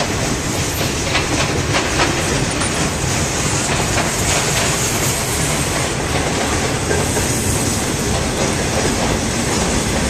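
Freight cars rolling past close by: a steady, loud rumble of steel wheels on rail, with a few sharp clicks in the first two seconds.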